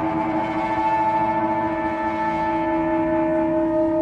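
Live amplified guitar sustaining a steady droning chord, its notes held without a break.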